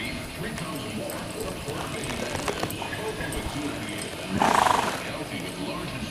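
Hoofbeats of a young Quarter Horse filly on arena dirt, over a radio playing in the background. About four and a half seconds in comes a loud rushing burst lasting under a second.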